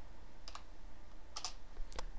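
Keys being typed on a computer keyboard: a few separate clicks, one about half a second in, a quick pair about a second and a half in, and another near the end.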